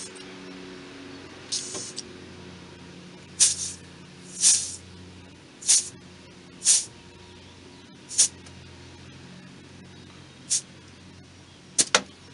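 Air chuck on a compressed-air hose hissing in about eight short bursts as it is pressed onto the valve of a truck's air suspension bag to inflate it to about 40 psi.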